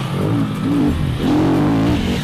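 KTM enduro dirt bike engine revving hard on a steep hill climb, its pitch rising and falling several times as the throttle is worked.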